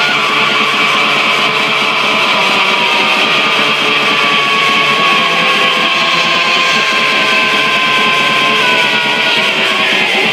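Raw, lo-fi black metal with distorted electric guitars in a dense, fast texture and almost no deep bass. A long high note is held through the middle and sinks slightly near the end.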